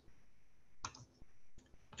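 Faint clicks at a computer as a presentation slide is advanced: one sharp click a little under a second in, then a few softer ones.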